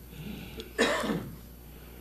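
A man clearing his throat once into a handheld microphone, about a second in.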